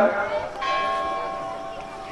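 A bell struck once about half a second in, ringing with several clear steady tones that slowly fade.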